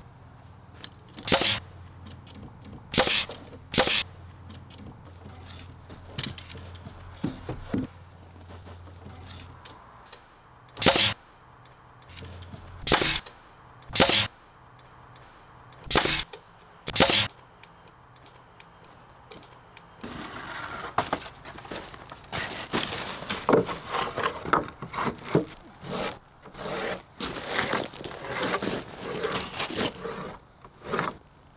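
Pneumatic framing nailer driving nails into floor-frame lumber: eight sharp shots, some in quick pairs, over the first two-thirds. Then a stretch of scraping, rubbing and light knocks as boards are handled and slid across the frame.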